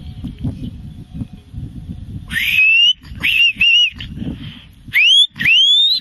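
A handler's herding whistle to working sheepdogs: a series of loud rising whistle notes starting about two seconds in, one long note, two short ones, then two more quick upward sweeps near the end. A low, uneven rumble runs under it in the first two seconds.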